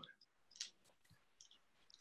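Near silence with a few faint, short clicks, about half a second in, again about a second and a half in, and near the end.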